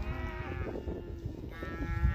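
Cows mooing: two long moos, the second starting about one and a half seconds in, over wind rumbling on the microphone.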